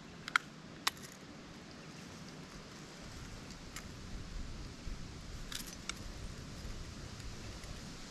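Fishing pliers clicking against a lure's hooks as they are worked out of a caught redfin perch's mouth: a few light, sharp metallic clicks, two within the first second and two more near six seconds.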